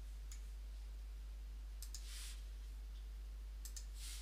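Computer mouse buttons clicking: a single click, then two quick press-and-release pairs, with a brief soft rush of noise between them, over a steady low hum.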